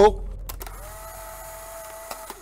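Editing transition sound effect to go with a camera-viewfinder graphic: a click about half a second in, then a steady electric whir that holds one pitch.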